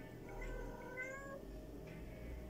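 A cat meowing once: a drawn-out call of about a second that rises slightly in pitch.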